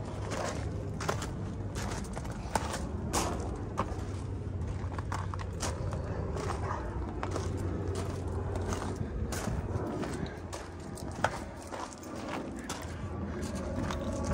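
Footsteps crunching on loose gravel, irregular sharp steps, over a steady low hum.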